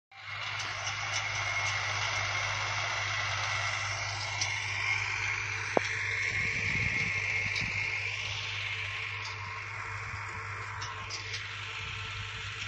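A distant tractor engine running steadily as it pulls a disc harrow across the field, under an even hiss. A single sharp tick comes about halfway through.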